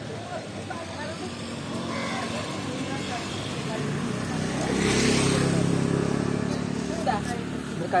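A small motor vehicle's engine passing close by on the street: it grows louder to a peak about five seconds in, then fades. Voices murmur faintly, and there is one short knock near the end.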